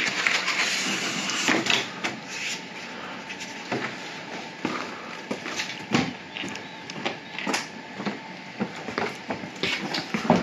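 Knocks, clicks and scuffs of a removed exterior door being handled and carried, with footsteps on wooden deck boards. There is a scraping rustle for the first two seconds, then scattered irregular knocks.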